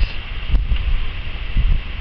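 Wind buffeting a handheld camera's microphone: an uneven low rumble, with a single sharp click about half a second in.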